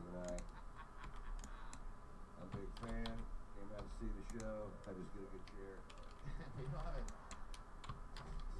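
Computer keyboard keys clicking in short irregular runs, as used for editing shortcuts, under faint talking voices.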